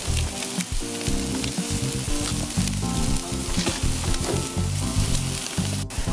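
Steady sizzling from lobster tails cooking on a hot charcoal grill grate, beside garlic butter in a hot cast-iron pan.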